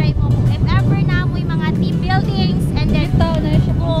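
A woman talking over a steady low rumble of wind buffeting the microphone.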